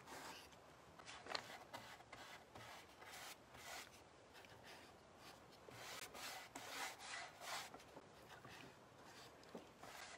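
Faint, repeated strokes of a flat paintbrush spreading wet clear liquid patina across a painted wooden board.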